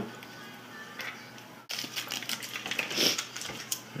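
Small clicks and rattles of hands working a plastic screw-on wire connector and tape inside a camera water housing. It is faint hiss for the first second and a half, then a quick run of light clicks and handling noises.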